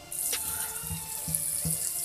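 Tap water running into a stainless steel sink and splashing over a dyed cloth bundle that is being rinsed by hand, the flow starting just after the beginning as a steady hiss.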